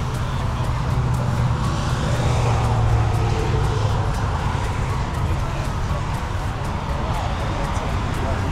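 Car-show background: a steady low rumble that swells about two to three seconds in, with voices and music.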